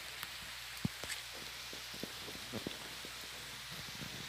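Light rain: a steady soft hiss with a handful of single drops ticking at irregular moments.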